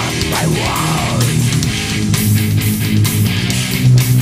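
Death/thrash metal recording: heavily distorted electric guitar riffing over drums, with swooping guitar pitch bends in the first second before the riff settles into low chugging.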